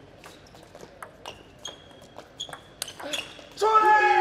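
A table tennis rally: the celluloid-type plastic ball clicks back and forth off rubber-faced rackets and the table about twice a second, some hits with a short high ping. Near the end a player lets out a loud shout, the loudest sound, as the point ends.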